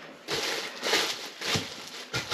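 Thin plastic slow cooker liner crinkling in a few short rustles as it is pressed down and folded around the rim of a crock pot.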